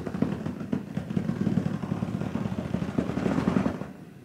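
Inflatable birthing ball rolling and rubbing against a wood-look floor under a person circling her hips on it: a continuous low rubbing noise, so loud, that stops just before the end.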